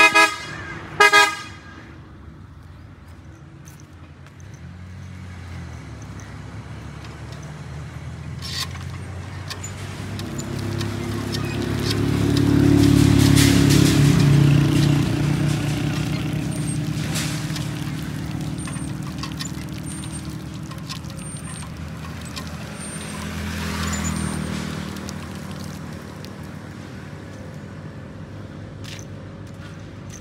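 Two short horn toots at the start, then a motor vehicle's engine swelling up and fading away as it passes, loudest about halfway through, with a smaller swell later.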